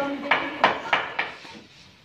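Quick sharp wooden knocks and clacks, about four in the first second and a half, from paper mantra rolls and wooden boards being worked by hand during zung rolling. The knocks die away near the end.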